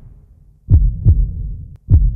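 Heartbeat sound effect: deep thumps falling in pitch, in lub-dub pairs a bit over a second apart, as background music fades away.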